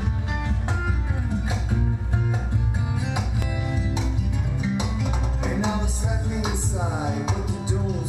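A song of fingerpicked acoustic guitar with a man's singing, played loud through a Philips NX8 tower speaker and picked up in the room, with strong low bass underneath.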